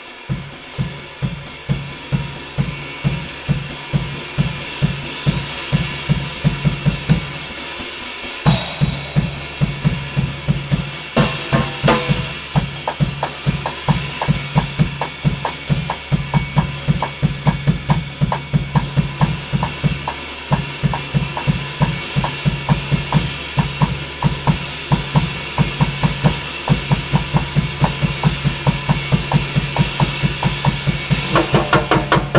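Drum kit played in a steady groove. Bass drum, snare and toms keep a running beat under the wash of a V-Classic Custom Shop 24-inch ride cymbal. Loud cymbal crashes come about eight and a half seconds in and again around eleven seconds.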